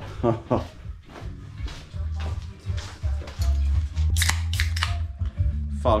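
Background music with a steady low bass line, with a few words spoken in the first second. About four seconds in come a few short, sharp hissing bursts.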